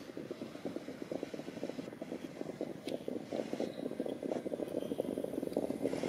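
Hooves of a field of harness-racing trotters and the wheels of their sulkies on a dirt track: a dense run of rapid hoof strikes that grows louder as the horses approach.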